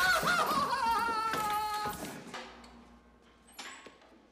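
A man screaming over a scuffle: high, wavering cries that fall in pitch and die away after about two seconds, leaving it quiet apart from a brief high sound near the end.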